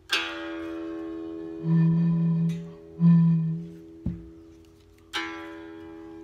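A cigar box guitar's strings are plucked and left ringing, twice. In between, an empty beer bottle is blown across its mouth twice for short, steady, low hoots that sound an E, used as a tuning reference for the strings. A short knock comes about four seconds in.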